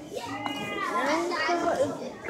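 Children's voices talking and calling out, high and rising and falling in pitch, with no clear words.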